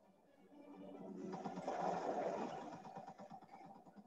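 Helicopter rotor chop, faint, swelling over the first two seconds and then fading again.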